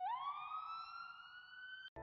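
Ambulance siren winding up in one long rising wail that cuts off abruptly near the end.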